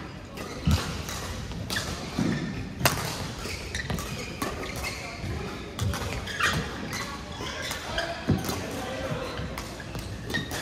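Badminton rackets striking a shuttlecock in a rally, sharp cracks at irregular intervals, the loudest about a second in, near three seconds and a little past eight seconds, with footfalls on the court between them. The hits echo in a large sports hall over background voices from other courts.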